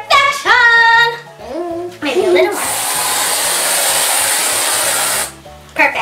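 Aerosol can of whipped cream spraying: a steady hiss for nearly three seconds that cuts off suddenly. Before it, in the first two seconds, come two loud high-pitched squeals and some lower, wavering tones.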